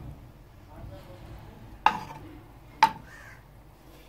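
A plastic spoon knocking against a karahi as a block of butter is pushed around in it: two sharp knocks, about two seconds in and again a second later.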